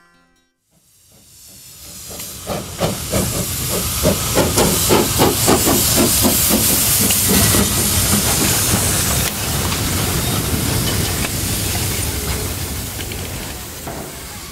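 Davenport 900 mm-gauge steam locomotive working past close by: rhythmic exhaust chuffs, about three a second, under loud steam hiss. The sound builds up over the first few seconds, the chuffs stop past the middle, and a steadier hiss then slowly fades.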